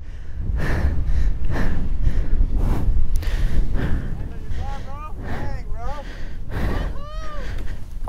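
Wind rushing and buffeting over the microphone of a flying paraglider pilot, gusting unevenly. Past the middle come a few short, high, voice-like exclamations.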